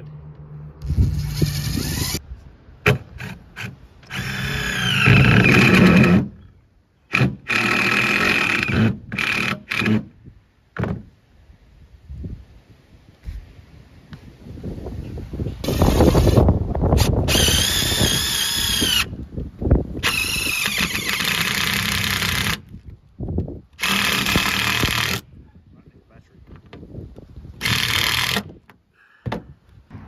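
DeWalt cordless impact drivers driving screws through plywood into the frame beneath, in about ten runs of one to four seconds with short pauses. Each run carries a whine that glides in pitch as the driver speeds up and slows.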